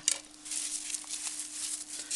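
Dry raffia and fabric of a small decorative Easter bunny rustling and crackling as it is handled, over a faint steady hum.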